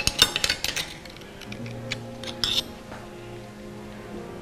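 Metal cutlery clinking against a plate and glassware: a quick run of clinks in the first second and a short cluster about two and a half seconds in. Soft background music with held low notes comes in about a second and a half in.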